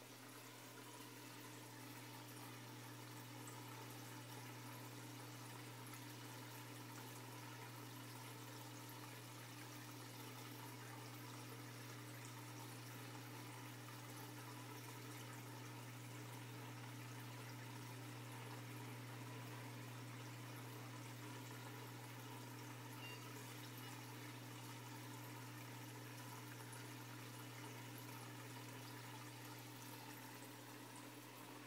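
Turtle tank's water filter running: a faint, steady low hum with water trickling in the tank.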